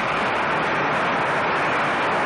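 A large audience applauding steadily, many hands clapping together at the close of a speech.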